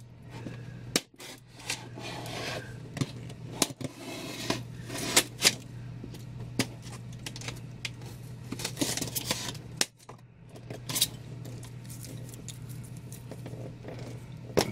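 Styrofoam packing and a cardboard box being handled and turned over: scattered light knocks, clicks and scrapes, over a steady low hum.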